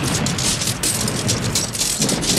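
Heavy rain pouring down with a dense patter, over a low rumble.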